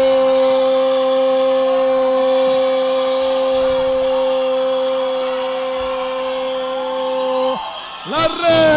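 A sports commentator's long goal cry, one unbroken note held at a steady pitch and slowly fading before it breaks off near the end, over faint crowd cheering.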